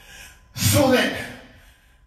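A man's voice through the microphone: one loud utterance about half a second in, lasting under a second.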